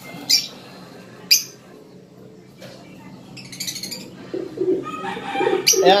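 Lovebirds calling while a hen is handled: two short sharp calls near the start, a burst of high chatter around the middle, and lower, wavering calls toward the end.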